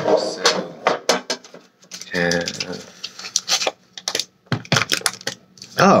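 Hands handling items in a metal lunch-box tin: rapid irregular clicks, taps and rustling of plastic packaging.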